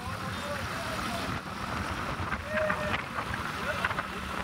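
Steady road and wind noise of a vehicle travelling along a highway, a continuous low rumble without any engine revving.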